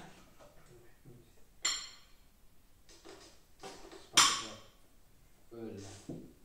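Metal spoons clinking and scraping against small glass pesto jars and plates, with two sharp clinks, about two and four seconds in, the second the loudest. A short voiced hum near the end.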